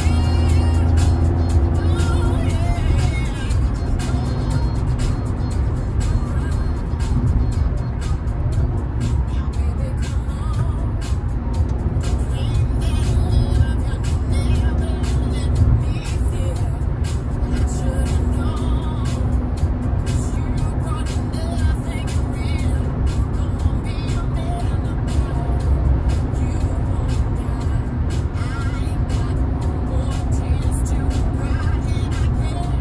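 Music playing inside a moving car's cabin over the steady rumble of road and engine noise at highway speed.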